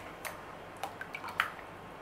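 Wire whisk stirring a thick ketchup-and-sorrel sauce in a plastic tub, with a few faint ticks as the wires touch the tub.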